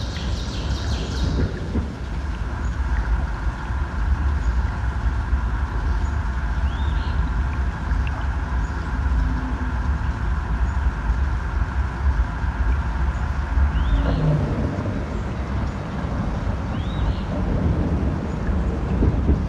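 Field-recorded soundscape of a steady low rumble with a machinery-like hum over it. A short burst of high chirping comes at the start, and a few single chirps come later.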